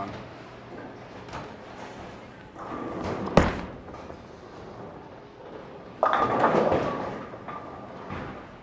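A Storm Night Road reactive bowling ball, drilled pin up, is released and lands on the wooden lane with a single sharp thud about three seconds in, then rolls down the lane. About six seconds in it crashes into the pins, and the pins clatter and ring for a second or two.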